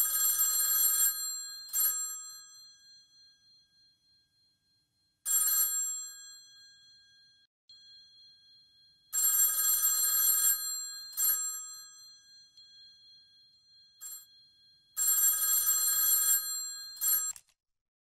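Old corded landline telephone's bell ringing in irregular bursts of one to two seconds, each ring dying away between bursts. The last ring cuts off shortly before the end, as the handset is lifted.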